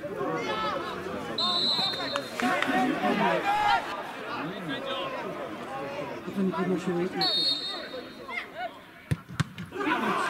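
Players calling and shouting on an outdoor football pitch, while a referee's whistle blows two short, steady blasts, one about a second and a half in and one about seven seconds in. Near the end come a couple of sharp knocks as the free kick is struck.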